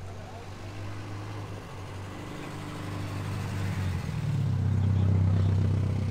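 A motor vehicle's engine running close by as a low, steady hum that swells about four seconds in and eases off near the end.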